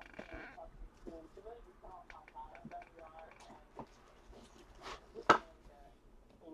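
Faint voices murmuring in the background, with a few light clicks and one sharp click about five seconds in, the loudest sound here.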